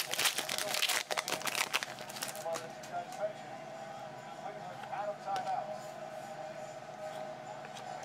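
Foil trading-card pack wrapper crinkling as it is torn open for the first two and a half seconds or so, then softer handling of the cards as they are fanned through.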